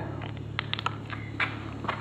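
Small plastic clicks and taps as the cap comes off a plastic reagent dropper bottle and the bottle is handled, several light ticks bunched around the middle. A steady low hum runs underneath.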